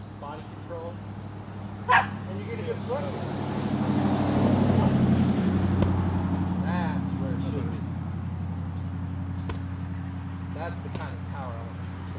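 A car passes on the adjacent road: its engine and tyre noise swells to a peak about five seconds in and then fades. About two seconds in comes a single sharp smack, a punch landing on a focus mitt.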